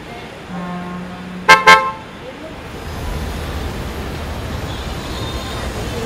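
Car horn giving two short, loud toots in quick succession about a second and a half in, followed by the low rumble of a car engine as the car moves off.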